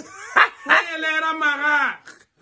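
Voices in a phone selfie video: a short sharp exclamation about half a second in, then a long, drawn-out, sing-song vocal phrase.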